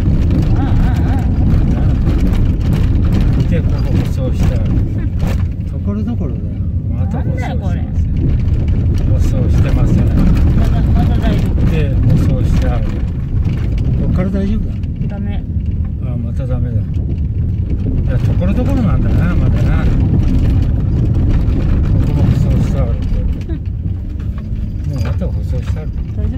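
A car driving along a gravel dirt road, a steady low rumble of engine and tyres on loose gravel heard from inside the cabin.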